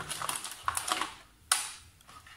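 Small plastic trimmer guide combs and the clear plastic blister tray being handled: a run of light plastic clicks and rattles, with one sharper click about one and a half seconds in.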